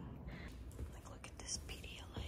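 Faint footsteps and rustling from a hand-held phone being carried, with a few soft knocks.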